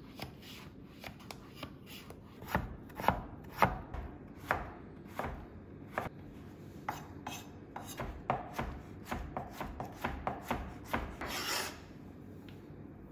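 Knife chopping raw potato on a wooden cutting board: sharp cuts, spaced irregularly at first, then a quicker run of about four a second, with a brief scraping rush near the end.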